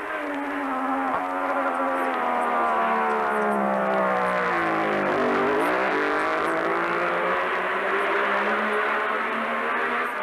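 Racing motorcycle engine running at high revs, its note dipping in pitch about halfway through and then climbing again.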